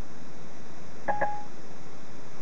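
A short electronic beep about a second in, over a steady background hiss: Siri's tone played through the Ford Sync car audio system after the spoken question.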